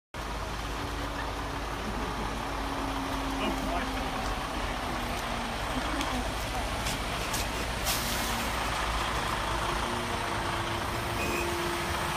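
Semi-truck's diesel engine running as the tractor-trailer rolls slowly past, with a short hiss of air about eight seconds in.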